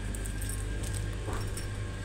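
Shop ambience: a steady low hum with faint background music and a few light clinks.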